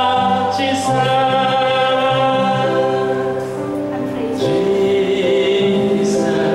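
Electronic keyboard playing slow worship music in long held chords that change about once a second, with a man's voice singing along.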